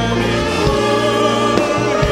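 Church choir singing a worship song with instrumental backing: held sung notes over a steady bass line, with a few beats struck.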